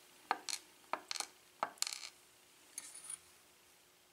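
Small metal lock parts clicking and clinking as the plug of a gutted pin-tumbler lock is picked up and handled over a pinning tray. There are several sharp clicks in the first two seconds, then a few fainter ones about three seconds in.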